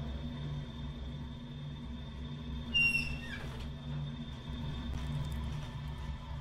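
A steady low hum, with one short high chirp about halfway through that slides down in pitch.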